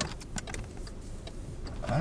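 Faint scattered clicks and rubbing of fabric against the microphone, over a low car rumble.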